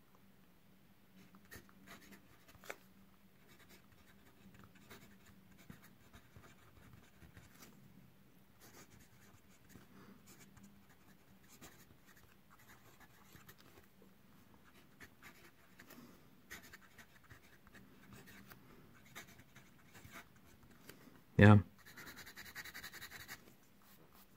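Lamy Studio fountain pen with a medium steel nib writing on dot-grid paper: faint, scattered pen strokes, the nib scratching a little as it moves. Near the end comes a louder, denser scratching as a small ink swatch is scribbled.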